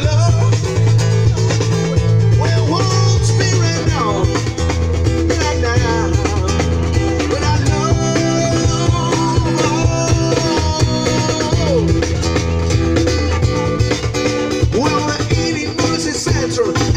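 Live music from a duo of musicians: singing over guitar, with a steady bass line underneath.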